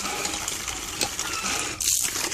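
Water pouring from a hand-operated well pump's spout into a bucket, with the pump's handle and mechanism clicking as it is worked.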